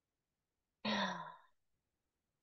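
A woman's brief voiced sigh, about a second in, falling in pitch.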